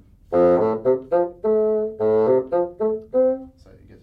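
Bassoon playing a quick phrase of about ten notes, some short and some held, as a demonstration of using more air when going up to higher notes.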